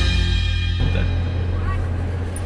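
Background music with a drum kit that cuts off less than a second in, leaving a low steady hum; a brief voice sounds near the end.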